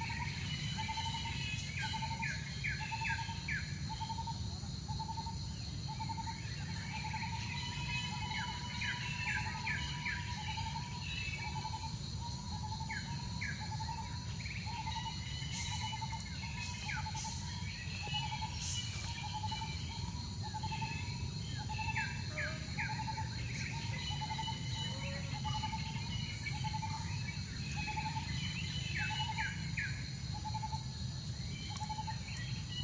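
Forest ambience of birds calling: one bird repeats a single short note about one and a half times a second throughout, while others give clusters of quick falling chirps. Insects keep up a steady high-pitched drone underneath.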